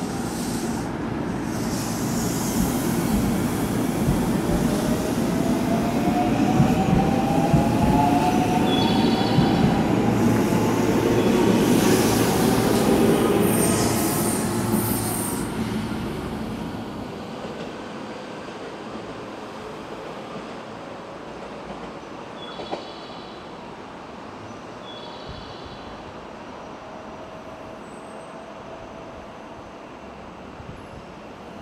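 An electric multiple-unit train pulling out of the station: the motor whine rises in pitch as it accelerates over a rumble of wheels on the track. The sound grows louder, then fades away after about fifteen seconds, with a few short high squeals.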